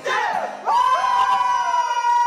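Several young men's voices shouting and singing loudly, then from under a second in one voice holds a long, high, steady note.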